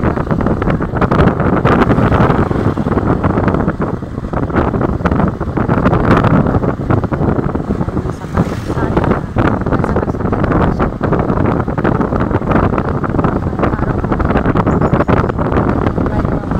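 Wind buffeting the microphone over the steady running of a motorcycle tricycle's engine, heard from inside its sidecar while riding.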